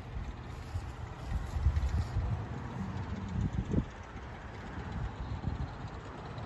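Wind buffeting the phone's microphone: an uneven low rumble that rises and falls in gusts.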